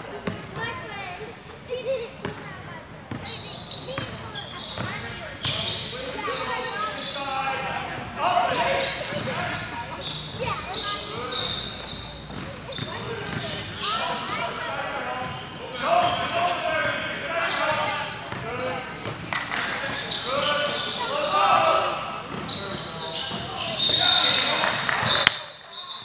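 Basketball being dribbled on a gym floor during play, with players and spectators shouting throughout in a large echoing hall. A loud, shrill referee's whistle blast sounds near the end.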